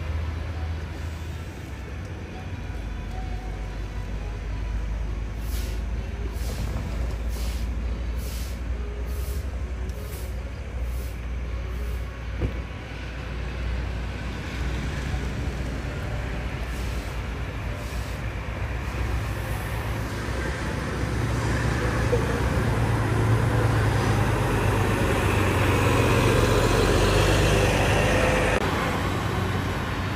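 Volvo B11R double-decker coach's 11-litre six-cylinder diesel engine running as the bus pulls away at low speed: a steady low rumble that grows louder as the bus passes close, loudest in the last third, then eases off near the end.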